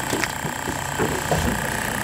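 Battery-powered bait-bucket aerator pump humming steadily, over a low even rumble.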